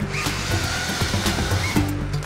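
Forestry harvester head's large chain saw cutting through a tree trunk at its base: a steady, dense rasp of sawing with a faint whine from the chain.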